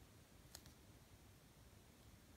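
Near silence: faint room tone, with one soft, sharp double click about half a second in.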